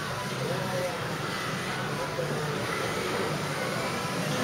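Indistinct voices murmuring over steady room hiss, with no clear words and no sharp sounds.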